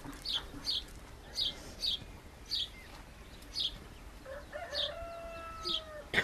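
Birds calling: short high chirps repeat every half second to a second, and from about four seconds in a longer call holds one steady pitch, falling slightly as it ends.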